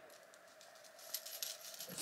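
Faint clicks and light rattling of small hard objects being handled, mostly in the second half.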